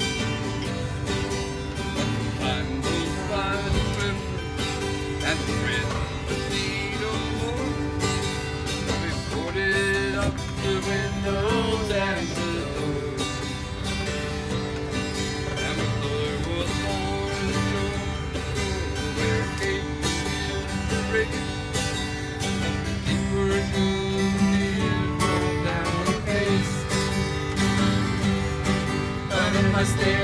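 Mandolin playing a picked instrumental break between verses of a slow folk song, with no vocals.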